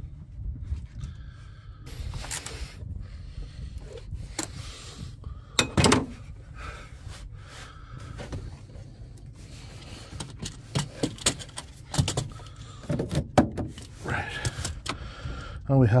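Hand tools clicking and knocking against metal in a van's engine bay while the bolts of the auxiliary water pump housing are tightened, over a steady low hum. The knocks come irregularly, loudest a few seconds in and in a cluster near the end.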